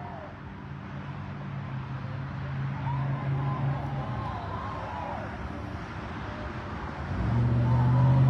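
Road traffic: vehicle engines running with a steady low hum that fades midway and comes back louder near the end, with faint distant voices under it.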